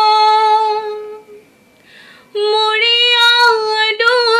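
A woman singing a Bengali folk song unaccompanied. A long held note fades out about a second in, then comes a short pause with a faint breath. A new note starts sharply a little past halfway.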